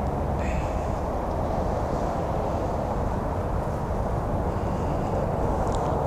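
Steady low rumble and hiss of background noise, with no distinct events.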